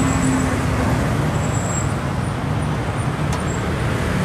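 Steady road traffic with motorbike engines passing, mostly a low rumble. A low engine hum fades out about a second in.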